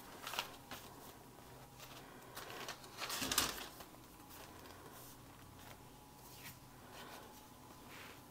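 Faint rustling and light handling of paper and card as a junk journal's pages are turned and tags are slipped into pockets, with one louder page-turn swish about three seconds in.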